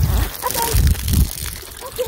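Water from a garden hose splashing into a clear plastic garden lamp and spilling out of it in a steady sputtering stream, with a brief voice sound partway through.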